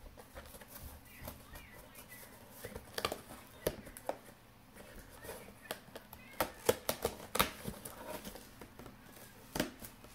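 A blade cutting and scraping through a cardboard box, with scattered sharp clicks, scratches and knocks as the box is handled. The loudest knocks come around the middle and near the end.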